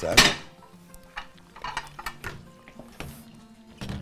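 Stainless-steel pot and stick blender clattering: one sharp metal knock just after the start, then a few light clinks and clicks of kitchenware.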